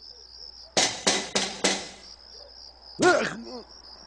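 Four quick knocks on a door over a steady chirping of crickets, followed about three seconds in by a brief voice.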